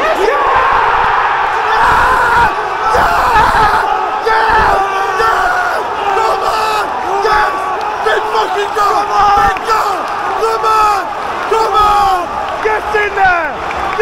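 Football stadium crowd erupting in a loud roar of celebration at a goal, with men close by screaming and shouting.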